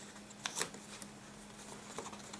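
Leather strap being unbuckled by hand: faint rubbing and small clicks of the metal buckle, the clearest click about half a second in.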